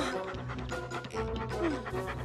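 Cartoon background music with a cartoon puppy's vocal sounds over it as the dog comes when called.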